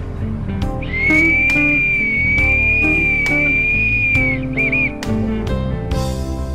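A high whistle held for about three and a half seconds, rising a little at the start and dropping off at the end, followed by two short warbles. Background music with plucked guitar plays underneath.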